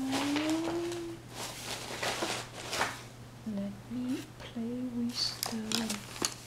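A woman humming softly to herself: a drawn-out, slightly rising note in the first second, a few soft rustles, then short hummed notes in the second half. A faint steady low electrical hum runs underneath.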